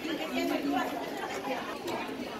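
Indistinct background chatter of several people talking in a large public hall.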